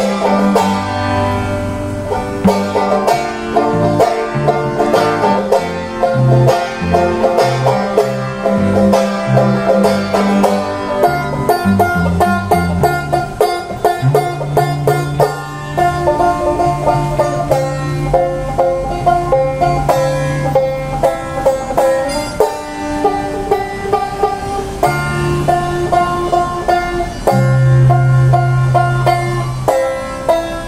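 Banjo picking a melody over strummed acoustic guitar, the two playing an instrumental passage together.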